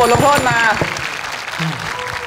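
A few people clapping their hands, quick irregular claps that thin out after about a second and a half, with talking over the start.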